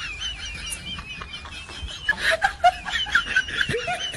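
High-pitched giggling voice with a wavering, whistle-like tone over it, part of a soundtrack laid over the clip; the same giggling pattern comes round again a little after two seconds in, like a looped sound clip.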